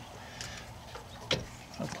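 A few light knocks and clicks as a plastic-tanked aluminum radiator is shifted and settled into a pickup's radiator support by hand.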